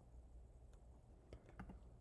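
Near silence with low room hum and a few faint clicks, one about two-thirds of a second in and a small cluster near the end, as from computer keyboard and mouse use.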